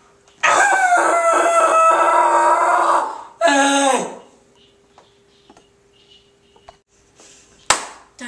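A boy screaming: one long, loud scream held for about two and a half seconds, then a second, shorter one that falls in pitch. A sharp click comes near the end.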